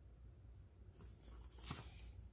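Faint rustle of paper pages as a picture book is handled, in two short bursts about a second in and just before the end, the second louder.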